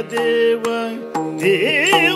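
Yakshagana bhagavata singing a melodic line over a steady drone: one long held note, then gliding, wavering phrases from about one and a half seconds in. A few strokes of the maddale, the two-headed barrel drum, sound along with it.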